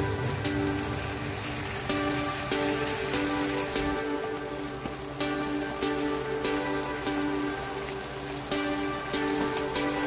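Spicy dakgalbi sauce bubbling and sizzling in an electric pan, a dense crackle, under background music with held melodic notes.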